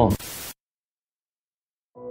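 A man's recorded voice ends a word, then a brief burst of static hiss from the archival recording cuts off suddenly about half a second in, leaving dead silence.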